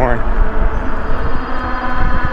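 Electric bike's 750 W hub motor whining steadily under throttle, with wind on the microphone and tyre rumble underneath.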